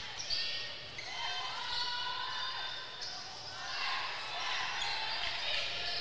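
Basketball game sound in a gym: a crowd murmuring, with a ball bouncing and short sneaker squeaks on the court.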